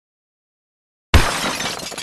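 Shattering-glass sound effect for an intro animation: after a second of silence, a sudden loud crash of breaking glass that trails off in a crackling spray.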